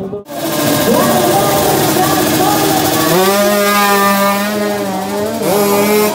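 Motorcycle engine revved hard: the pitch rises quickly about a second in, then is held at a steady high pitch from about halfway, dipping briefly near the end.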